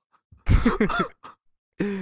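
A man laughing: a burst of several quick pulses about half a second in, then another short laugh near the end.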